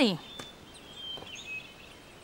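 Birds chirping faintly in the background: a few short, thin whistled chirps over a quiet outdoor ambience, just after the tail of a woman's spoken word at the very start.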